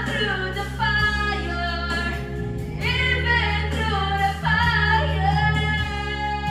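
Women singing videoke (karaoke) into microphones over a pre-recorded backing track, with the sung voice held in long notes above a steady bass line.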